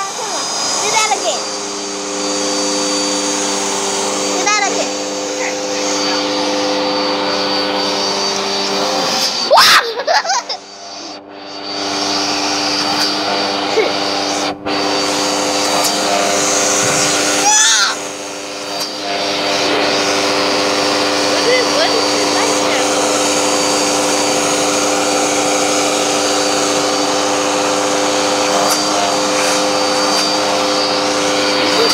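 Vacuum cleaner running with a steady hum. A loud knock about ten seconds in is followed by a brief drop in the motor sound, which then resumes. A child's voice is heard briefly at the start and again around two-thirds of the way through.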